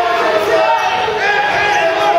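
Several people shouting over one another, spectators and coaches yelling at the wrestlers during a bout, with the echo of a gym.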